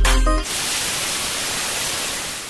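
Bass-heavy electronic music that cuts off about half a second in, giving way to a steady hiss of TV-style static noise.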